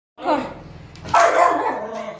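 Small dog barking, two barks about a second apart, the second louder.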